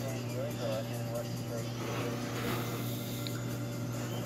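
A steady low hum with faint, indistinct voices in the background.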